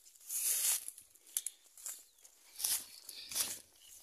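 Footsteps crunching on loose track ballast and brushing through dry grass, a handful of uneven steps with a few sharp clicks between them.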